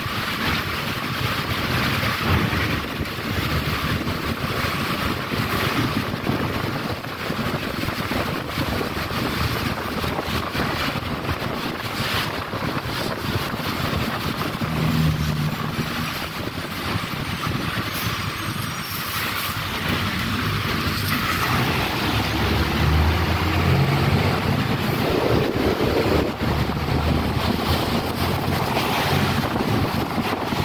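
Ride noise inside a moving city bus: a steady hiss of tyres on a wet road over the low drone of the bus engine, which grows louder for a few seconds past the middle as the bus pulls harder.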